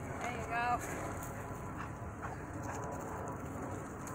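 A short voiced sound from a person, rising slightly in pitch, about half a second in, over a steady low outdoor rumble that sounds like wind.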